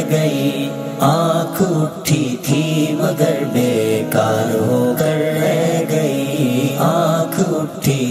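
Male voice singing an Urdu ghazal in nasheed style: a slow melodic passage with no clear words, its held notes wavering in pitch.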